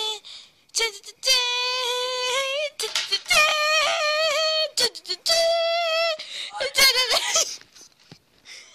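A high-pitched voice singing long held notes with a wavering, bending pitch, in several phrases broken by short gaps.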